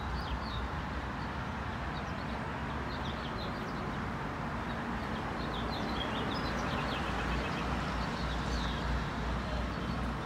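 Steady hum of distant traffic with small birds chirping in short, high notes over it again and again.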